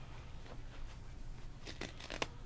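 A disposable diaper on a reborn doll being handled and unfastened, with a couple of short crinkling rustles near the end over a low steady hum.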